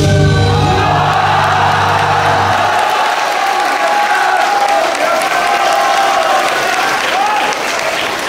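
Audience applauding and cheering. Near the start the routine's music ends on a loud final chord that holds for about two and a half seconds before cutting out.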